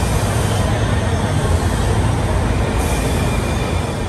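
Washington Metro railcars running past the platform in an underground station: a loud, steady rumble of the train on the track, with a higher hiss joining about three seconds in.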